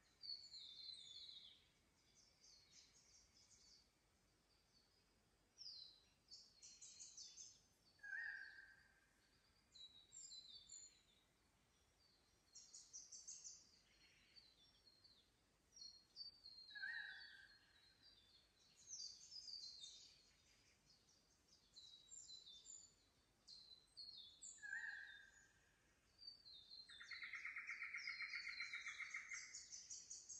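Faint dawn chorus of Australian forest birds: scattered high chirps and twitters, a few short lower whistled notes, and a longer pulsed call near the end.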